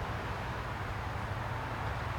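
Steady outdoor background noise: a continuous low rumble with a soft hiss above it, with no distinct events.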